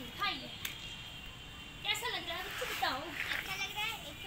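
Children's high-pitched voices chattering and calling, a short call just after the start and several overlapping voices about two seconds in.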